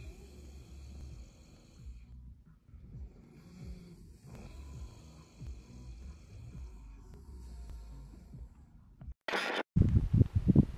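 Faint, rasping snoring of a sleeping person, in drawn-out breaths with short pauses between them. Near the end a brief, much louder burst of noise cuts in.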